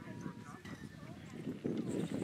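Indistinct voices in the background over a low, choppy rumbling noise that gets louder near the end.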